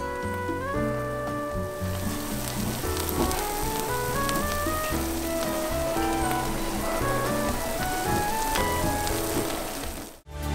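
Background music playing a stepped melody, with a steady sizzling hiss joining about two seconds in: monjayaki frying on a hot iron teppan griddle.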